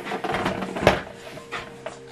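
Plastic casing of an inkjet printer being turned around on a table: light rubbing and handling noise with a sharp knock a little before one second in.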